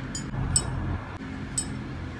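Low steady background hum with a few short, sharp clicks, one about half a second in and another near the end.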